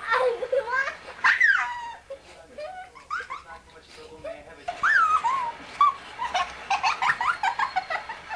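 A young child squealing and giggling, with high cries that swoop up and down in pitch and a run of quick laughs near the end.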